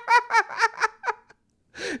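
A man's high-pitched giggle: a quick run of short laughs, about five a second, that dies away about a second in, followed by a short breath before he speaks again.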